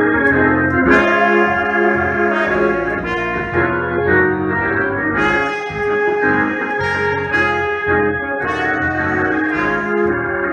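Live trumpet playing a melody of sustained, changing notes over instrumental accompaniment with a low bass line.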